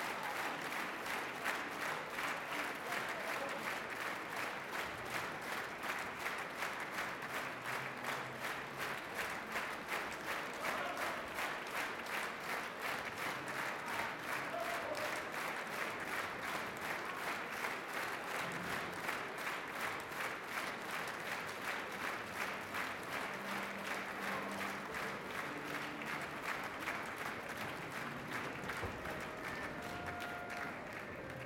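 Large theatre audience applauding steadily, the many hand claps merging into an even pulse.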